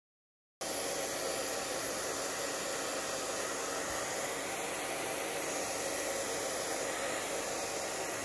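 Handheld hair dryer blowing steadily, drying a first layer of water-thinned fabric paint on a T-shirt. It starts abruptly a little over half a second in.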